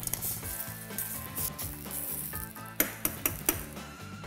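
Lamb shanks in beef stock sizzling in a stainless steel sauté pan. A metal utensil clinks against the pan a few times about three seconds in.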